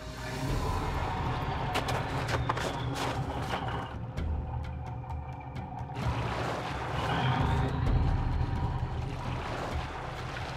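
Low steady rumble of the fishing boat's engine, with scattered sharp knocks and bumps on the boat, under background music.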